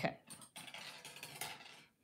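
Faint, scattered light clicks and rustles of 16-gauge craft wire and stepped looping pliers being handled and bent over a paper template.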